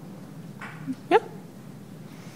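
Steady low room hum, and about a second in a woman says a single short "Yep?" with a sharply rising pitch, inviting a question.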